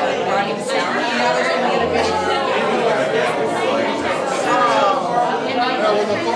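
Party chatter: several men and women talking at once, their voices overlapping so that no single conversation stands out.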